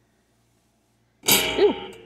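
A person sneezing once, a sudden loud burst about a second in that trails off.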